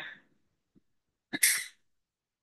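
A single short burst of noise about one and a half seconds in, a brief sneeze-like blast. It is stray noise picked up by a participant's open microphone on the online class call.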